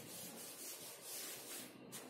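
A handheld duster wiping a whiteboard in quick back-and-forth strokes, a faint rubbing hiss that stops near the end.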